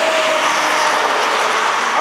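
Steady road noise of traffic passing on the street, a pickup truck's tyres and engine going by.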